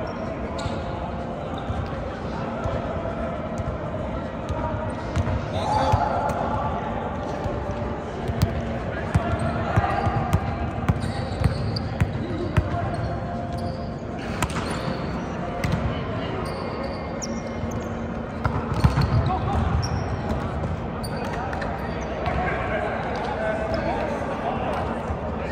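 Echoing gym ambience during an indoor volleyball game: players' voices talking and calling, with a run of sharp smacks of balls being struck and bouncing on the hardwood floor in the middle.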